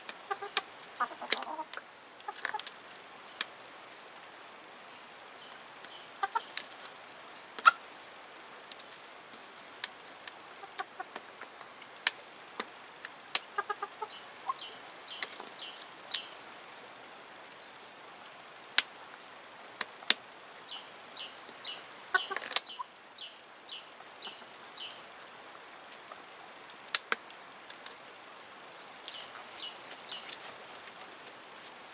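Chickens clucking as they peck at fruit and vegetables on a wooden feeding table, with sharp taps of beaks on the boards.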